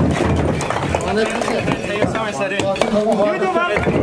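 Hammers and iron bars knocking against a brick wall, many sharp knocks in quick succession, with several men's voices talking and calling out over them from about a second in.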